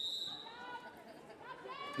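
A referee's whistle blown once: a single high, steady blast lasting about half a second and tailing off. Faint voices of players and spectators sound underneath.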